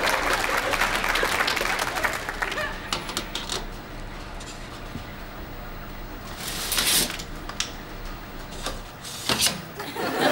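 A bar of soap scraped on a metal hand grater in quick strokes, under studio audience laughter that dies away after about two seconds. Then a few scattered clicks and two short hissy bursts, one about seven seconds in and one near the end.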